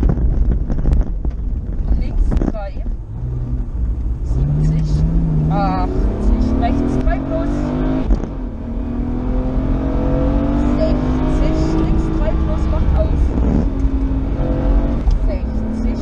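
Interior sound of a BMW rally car at full speed on a tarmac stage: the engine revs hard and climbs in pitch through the gears, dropping at each shift or lift. There are clear breaks about eight seconds in and near the end, over steady road and wind noise.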